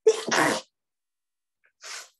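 A person sneezing once: a sudden loud burst in two quick parts lasting about half a second, followed near the end by a short, quieter breathy sound.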